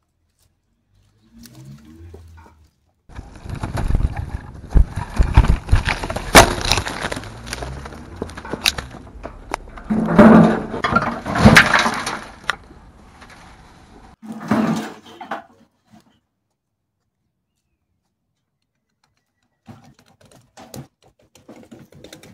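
Dry pruned grapevine canes crackling, snapping and scraping against each other as they are handled and pressed together: a dense clatter of sharp snaps for about ten seconds, loudest in two bursts past the middle, then one more short burst.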